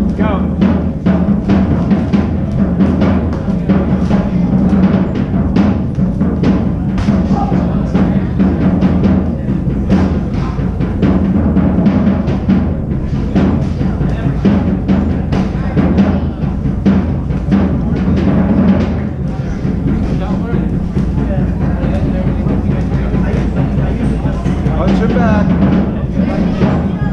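Loud background music with heavy drums, running steadily with frequent sharp hits.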